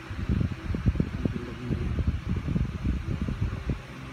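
Irregular low thumps and rumble on the phone's microphone, over a steady hiss.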